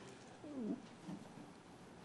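A faint, short vocal murmur with a falling pitch about half a second in, and a weaker one just after a second, over low steady room noise.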